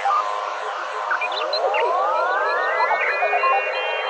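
Beatless intro of a goa trance track: a dense bed of synthesizer texture, with a cluster of synth tones gliding upward from about a second in and levelling off high near the end.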